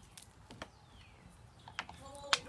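Handling noise from a handheld camera: a few faint clicks and light knocks, two of them close together near the end.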